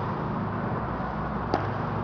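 Steady low background hum with one short, sharp knock about a second and a half in.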